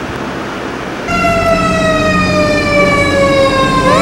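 Steady rush of an electric fan, then a fire truck's siren sounding abruptly about a second in: one wailing tone that falls slowly in pitch for nearly three seconds, then sweeps sharply up near the end.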